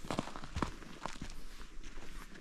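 Footsteps of a person walking up to a yurt's door, a handful of irregular steps over grass and a mat in front of the entrance.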